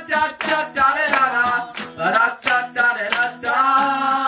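Live acoustic guitar song with wordless sung vocals and hand claps keeping a steady beat, about three to four a second.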